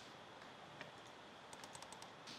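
Near silence, with faint clicks of computer keys: a couple of single taps, then a quick run of five or six near the end.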